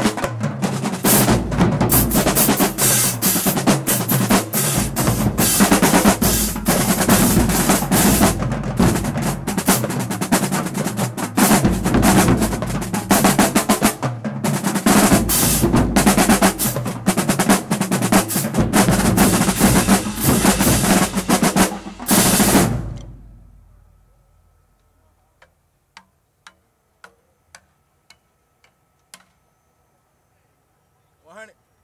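Marching-band drumline of snare drums, tenor drums, bass drums and crash cymbals playing a loud, dense cadence together, with drum rolls. It stops about three-quarters of the way through and dies away, followed by a handful of faint sharp ticks.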